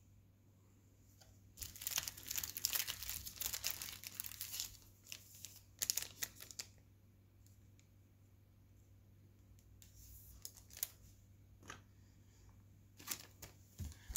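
Foil trading-card pack wrapper crinkling and tearing as it is opened, a dense crackle for a few seconds, a couple more short bursts, then only a few light clicks.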